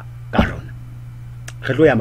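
A man clears his throat once, briefly, about half a second in, then starts speaking again near the end. A steady low electrical hum runs underneath.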